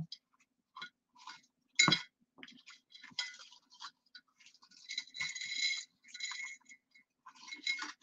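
Metal costume jewelry clinking as pieces are lifted and pulled apart from a tangle: faint scattered clicks, a louder knock about two seconds in, and a longer jingle of chain links around five to six seconds.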